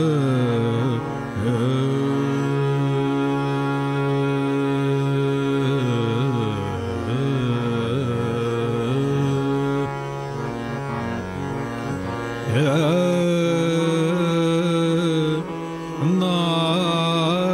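Male Hindustani classical vocalist singing raag Abhogi Kanada: long held notes with slow glides and small ornaments. A new phrase opens with a swooping rise about three-quarters of the way through.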